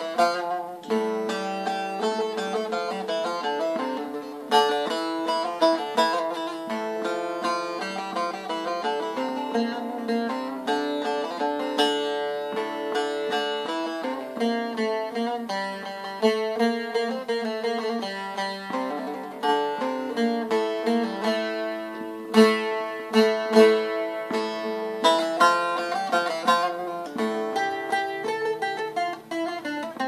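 Bağlama (long-necked Turkish saz) played solo: a continuous run of quick plucked notes of a folk melody, with a few sharper accented strikes.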